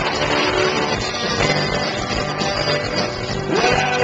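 A live rock band playing at steady full volume: strummed acoustic guitar, electric guitars and a drum kit.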